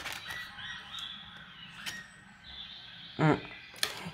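Oracle cards being handled by hand: faint sliding and rubbing of card stock, with a few light clicks and taps as a card is drawn from the deck and laid on the tabletop. A short hummed "hum" comes about three seconds in.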